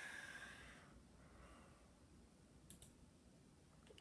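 Near silence: room tone with a soft hiss in the first second, then two faint mouse clicks close together about three quarters of the way through.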